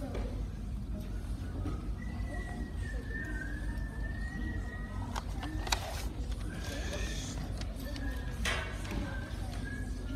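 A stray high recorder note held for about three seconds with a slight waver, then fainter high recorder notes near the end, over the low murmur of a hall full of children. Two sharp knocks sound in between.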